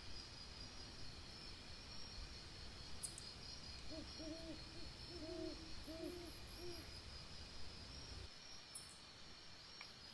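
An owl hooting: a quick run of about six short, low hoots a few seconds in, faint against a steady high chirring of insects.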